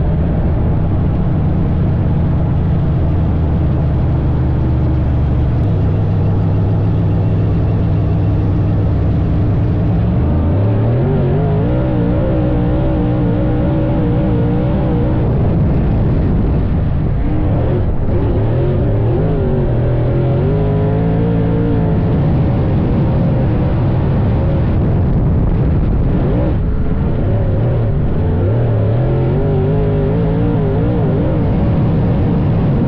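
Dirt late model race car's V8 engine at racing speed. It holds a steady note for about ten seconds, then revs up and down again and again, its pitch rising and falling in long sweeps.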